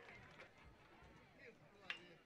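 Near silence: faint background hiss between stretches of commentary, with one faint click near the end.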